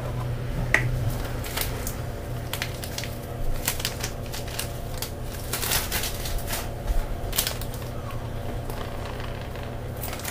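Flour being poured from a cup into a stainless steel mixer bowl, with scattered soft clicks and rustles over a steady low hum.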